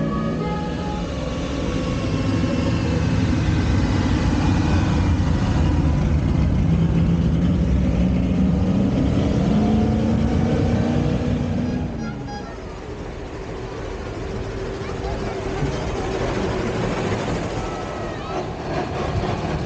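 Jawa 350 OHC engine running under way, its pitch climbing steadily as it pulls, then falling away sharply about twelve seconds in as it slows, before running on at an even pace.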